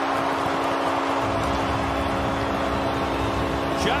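Hockey arena crowd noise after a goal against the home team, with a steady held chord of low tones underneath.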